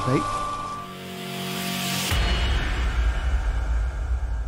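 Intro logo sting: a swelling whoosh builds over the first two seconds, then a deep bass hit lands about two seconds in and rumbles on.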